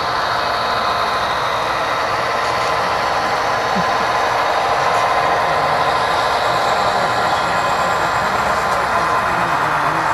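HO scale model diesel locomotives with DCC sound decoders running as two trains move past, their speakers playing steady diesel engine sound.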